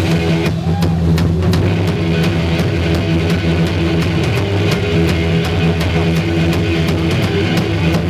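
Live heavy blues-rock played by a power trio: distorted electric guitar, electric bass holding low notes and a drum kit with cymbal and snare hits throughout, with no vocals.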